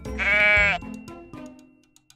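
A single goat bleat, about half a second long, over light background music that fades out near the end.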